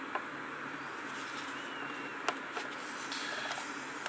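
Quiet, steady room hiss with a few faint, brief clicks, one near the start and a sharper one about two seconds in.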